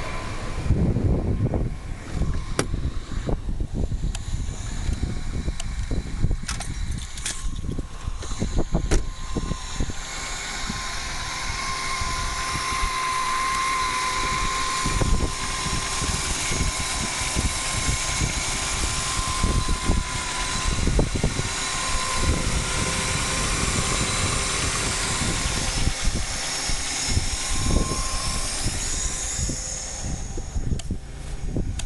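Oldsmobile Alero's 3400 V6 idling steadily at just over a thousand rpm, just jump-started after sitting, with a steady high whine over the engine note. Scattered knocks and thumps come through it, mostly in the first part.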